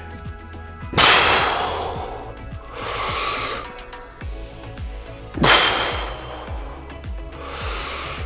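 A man's heavy breathing while working a dumbbell pullover: two forceful exhales, about one second and five and a half seconds in, each followed by a shorter inhale, over background music.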